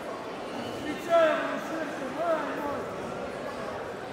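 Voices calling out in a sports hall, with the loudest shout about a second in and more voices for the next second or so.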